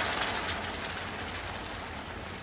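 Hot water pouring into a hot frying pan around a seared beef steak, the liquid sizzling and bubbling, gradually dying down.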